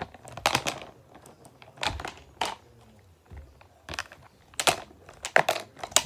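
A purple plastic container with pretend muffins in it being flipped and handled close to the microphone, giving an irregular run of crinkling rustles, knocks and clatters.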